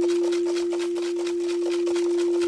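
Crystal singing bowl ringing one steady, sustained tone, with a fainter lower tone and a faint hiss beneath it.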